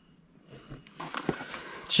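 Near silence, then faint rustling and a few light knocks as gloved hands shift a removed engine cylinder head with its exhaust manifold on cardboard.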